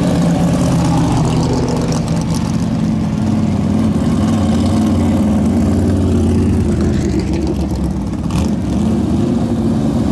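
Vintage modified race cars' engines running at low speed as the cars roll slowly past close by, the engine note rising and falling a little.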